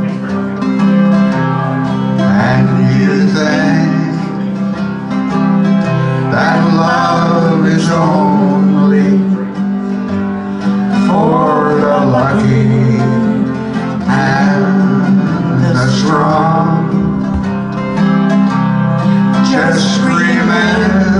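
Steel-string acoustic guitar playing the chords of a slow ballad, with a wordless vocal melody over it.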